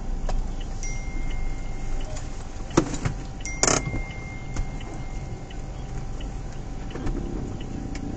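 Steady low hum of a car cabin with the engine running, broken by a sharp click a little before three seconds in and a short noisy jangle just after. A faint, high, steady tone sounds twice for about a second each.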